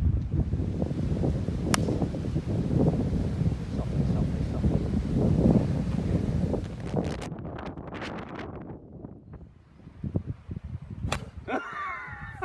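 Wind buffeting the microphone as a low rumble that fades after about seven seconds, with a sharp click about two seconds in. Near the end, a single sharp crack of a driver striking a golf ball off the tee.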